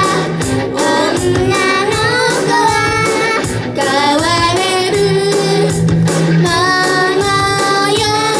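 Young girls singing an upbeat J-pop idol song together into microphones over a recorded backing track with a steady beat.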